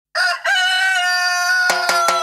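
Rooster crowing: a short first note, then one long held call that falls slightly in pitch at its end. A beat of sharp drum hits starts under it about a second and a half in.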